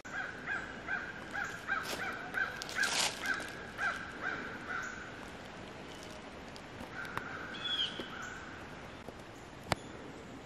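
A bird calling in the woods: a steady run of short repeated notes, about three a second, for some five seconds, then a shorter run with a brief rising chirp. A single sharp click near the end.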